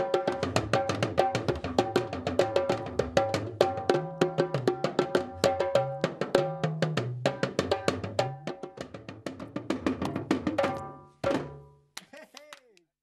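Two hourglass talking drums and a djembe played together freestyle: fast, dense hand and stick strokes, the talking drums' low pitch bending up and down as their cords are squeezed. The playing fades out near the end, with one last short flourish.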